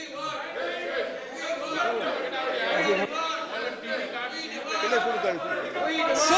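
Many people shouting protest slogans over one another in a large hall, a din of overlapping voices.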